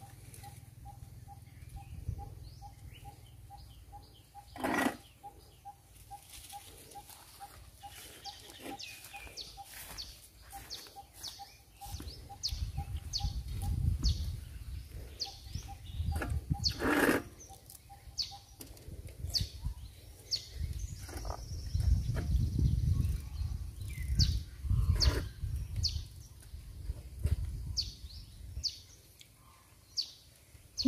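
Outdoor birdsong: many short, high chirps scattered throughout, with a single mid-pitched note repeated evenly several times a second through the first half. Two louder sudden sounds come about five and seventeen seconds in, and a low rumble comes and goes in the second half.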